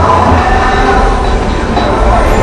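Loud, dense layered noise with a heavy low rumble, part of an experimental electronic music piece.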